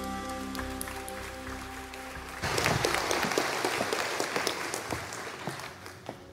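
A held chord from the worship band rings on and fades, with a few scattered claps. About two and a half seconds in, the congregation breaks into applause, which dies away near the end.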